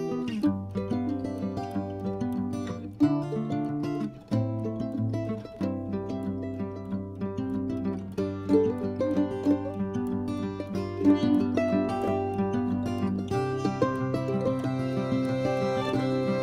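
Background music led by plucked string instruments, playing a melody over held low notes.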